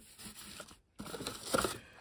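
Packaging and containers being handled on a workbench: two bursts of scraping, crinkling noise, about a second each.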